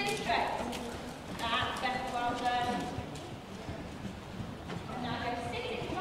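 A pony's hooves clip-clopping in irregular knocks, with people talking indistinctly in the background.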